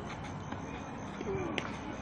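Steady outdoor background noise with a faint distant voice about a second and a quarter in, followed by a single sharp tap.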